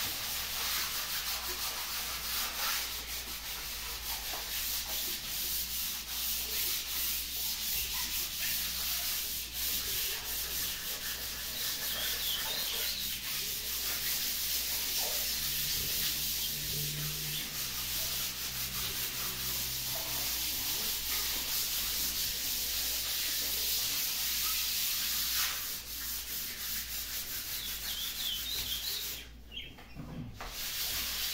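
Walls being sanded by hand with sandpaper by two people working at once: a continuous scratchy rubbing made of many overlapping strokes. It drops away briefly near the end.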